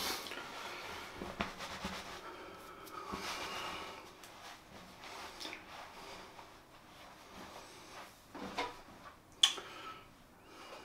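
Faint rubbing and rustling handling noises with breathing, and a few light clicks. A sharper click comes near the end.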